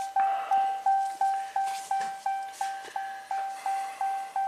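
2021 Ram 1500's in-cab warning chime repeating, a single-pitch ding about three times a second, each ding fading quickly.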